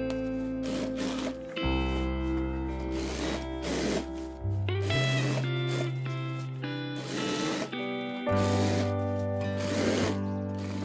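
Background music: held chords that change every couple of seconds over a steady beat.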